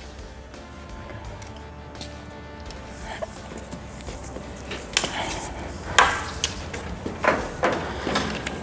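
Quiet background music, joined in the second half by several sharp clicks and knocks as hydraulic hoses with metal coupler ends are handled against the tractor.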